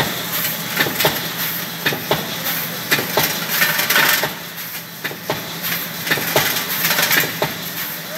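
Polystyrene foam food-container forming machine running: irregular sharp clicks and knocks about every half second over a steady hum, with a burst of hissing about four seconds in.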